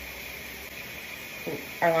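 Steady low hum and hiss of a clothes dryer running in another room, heard faintly through the walls. A woman starts to speak near the end.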